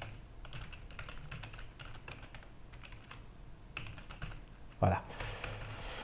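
Typing on a computer keyboard: a run of light, irregular key clicks as words are typed. About five seconds in comes one short, louder sound of the voice.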